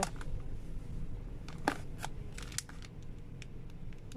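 Scattered light clicks and crinkles of clear plastic takeaway food containers being touched and handled on a shelf, over a low steady background hum.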